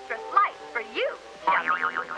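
Cartoon character voices talking over a background music score that holds a steady note.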